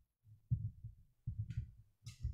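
A series of low, muffled bumps and knocks, about six in two seconds, like handling noise near the microphone as someone works at the computer.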